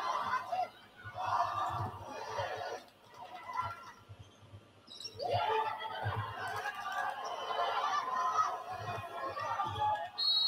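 Indistinct background voices that the recogniser did not make out as words, coming in two stretches with a quieter lull in the middle.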